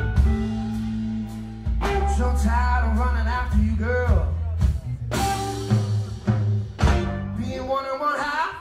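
Live blues trio of electric guitar, bass guitar and drum kit playing an instrumental passage: deep sustained bass notes and drum hits under a guitar line that glides up and down in pitch in the middle.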